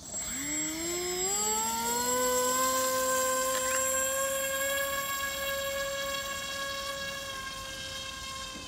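Electric motor and propeller of a small foam RC ground-effect model spinning up as the throttle is opened, its whine climbing in pitch over about two seconds and then holding steady. The whine slowly fades as the model skims away across the water.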